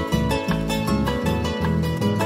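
Instrumental passage of a Paraguayan polka: a Paraguayan harp plays a run of plucked melody notes over a steady bass line.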